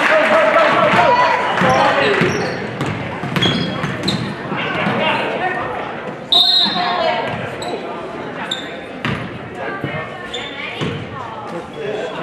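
Basketball game sounds in a gym: the ball bouncing on the hardwood court, short sneaker squeaks and the voices of players and spectators echoing in the hall. A short, high whistle blast comes about six seconds in.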